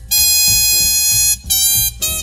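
Small swing-style jazz band recording: a horn holds one loud high note for just over a second, then plays a second, shorter note, over the rhythm section underneath.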